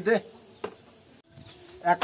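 A man's voice saying one short word, then a quiet pause holding a faint buzz. A sudden edit cut falls just past the middle, and a man starts speaking again near the end.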